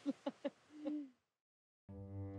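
A voice repeating a quick 'ta ta ta' that trails off, then a single short owl-like hoot that rises and falls slightly in pitch. Near the end, bowed-string music starts.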